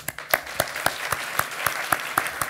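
Theatre audience applauding: a dense run of many hands clapping, with single sharp claps standing out.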